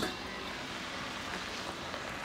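Steady hiss of a pot of cut potatoes boiling on an electric stove, with a small knock right at the start.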